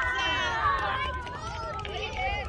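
Several voices shouting over one another at a football match, with wind rumbling on the microphone.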